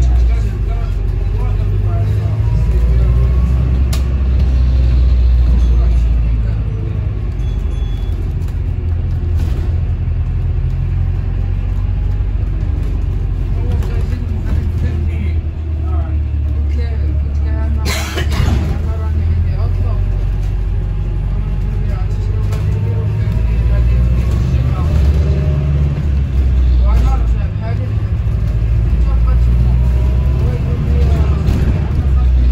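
Volvo B5LH hybrid bus running, heard from inside the passenger saloon: a low engine drone that steps up and down in pitch and level several times as the bus pulls and eases off. About eighteen seconds in there is a brief burst of hiss.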